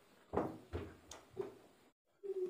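Three dull knocks within about a second, from a steel eating plate bumping on the table as rice is mixed and pressed in it by hand.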